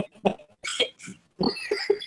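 Men laughing in short, broken bursts, heard over a video-call connection.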